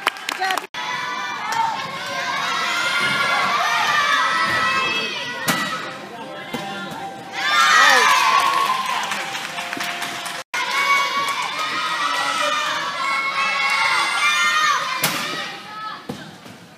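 A group of young girls cheering and shouting together, many high voices overlapping, with a louder surge about halfway through. The sound cuts out for an instant twice.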